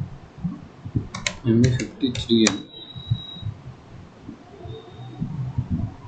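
Computer keyboard typing and mouse clicks: a run of short, irregular taps as a transaction code is keyed in and entered.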